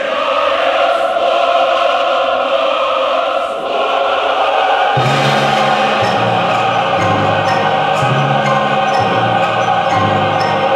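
A choir singing sustained chords in a slow, stately choral passage, with a deeper part entering about halfway through.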